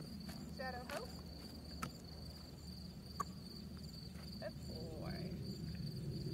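Crickets trilling in one steady, high-pitched tone, with a few sharp clicks scattered through.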